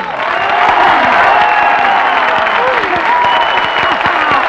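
Studio audience applauding and cheering as the musical number ends, with voices calling out over the clapping.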